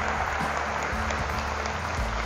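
Large crowd applauding steadily, over background music.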